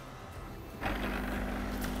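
Steam wand of a Sage espresso machine being purged, clearing out milk that was sucked back up the wand: a steady hiss of steam that starts suddenly about a second in, with a low hum under it.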